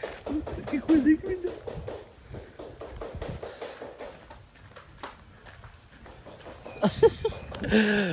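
Indistinct voices of people talking, clearer in the first second and again near the end, with quieter mixed sound in between.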